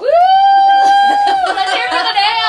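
A woman's high-pitched "woo!" held out long and loud. It jumps up sharply at the start, holds level, then slides slowly lower after about a second and a half.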